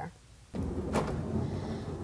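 Kia Sedona minivan's sliding side door moving: a steady sliding, rumbling noise that starts about half a second in, with a sharp click about a second in.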